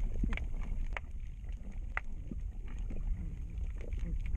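Underwater sound picked up by a handheld camera in its housing while freediving: a steady low rumble of water moving against the camera, with a few sharp clicks, the clearest about two seconds in.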